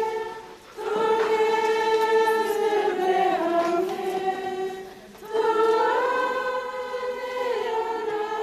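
A choir singing a slow melody in unison, on long held notes. The singing comes in two phrases, with brief breaks about half a second and five seconds in.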